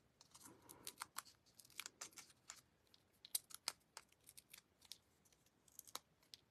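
Faint, scattered little clicks and taps from cardstock and a strip of paper-craft adhesive pieces being handled and set down on a work mat.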